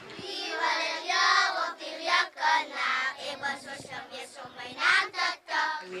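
Children's voices singing together in a high register, with phrases held and broken off every second or so.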